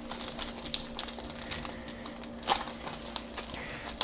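Foil wrapper of a 2014-15 Panini Totally Certified basketball card pack crinkling and crackling as fingers tear it open along the top seam, with a louder crackle about two and a half seconds in.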